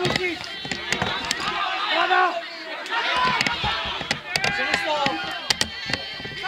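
Footballers calling and shouting to each other during play on an open pitch, with a few sharp knocks, the loudest near the end.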